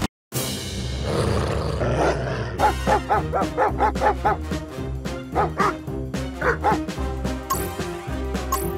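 Cartoon background music, broken by a brief dropout just after the start. From about two and a half seconds in comes rapid dog-like yapping from a cartoon character, about three to four yaps a second.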